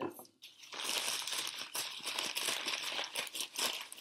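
Paper bakery bag crinkling and rustling continuously as hands work a hard, stale baguette inside it, a dense crackle of many small clicks starting under a second in.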